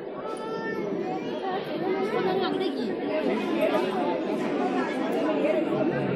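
Crowd chatter: several people talking at once in overlapping, unintelligible conversation.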